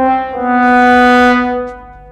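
Sad trombone sound effect: the end of a descending 'wah-wah-wah-waaah', one short note and then the lowest note, held for about a second and a half. It is a comic cue marking a failure, here a model part that has just been forced and gone wrong.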